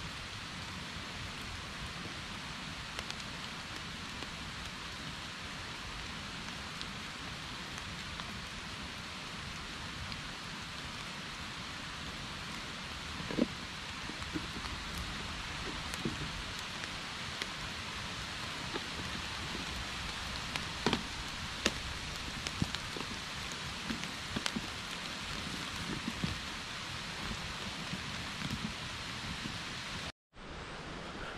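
Steady hiss of rain falling through woodland, with scattered sharp drips, taps and leaf-litter rustles, mostly in the second half.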